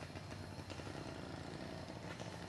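An engine running steadily, with a fast, even low pulse.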